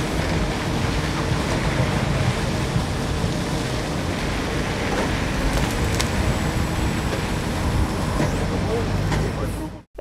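Backhoe loader's diesel engine running steadily while the bucket works soil over a trailer, with a few faint knocks.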